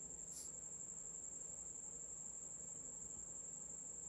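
Faint background noise with a steady high-pitched whine that holds one unbroken pitch, over a low hum.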